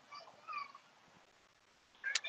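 A faint, short high-pitched animal call: two brief falling notes in the first second.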